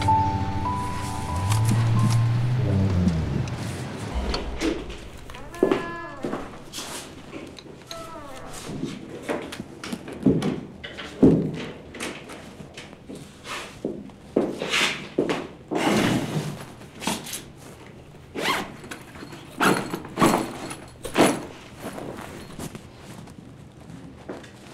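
Background music fades out in the first few seconds. Then comes a long run of irregular knocks and thuds, about one or two a second, loudest around the middle.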